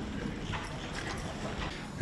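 Footsteps and chair noise as several people settle at a long table, heard as a few faint knocks and clicks over low room noise.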